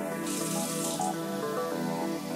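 Water from a kitchen mixer tap running into an empty plastic spray bottle, a hiss that lasts about a second, over background music.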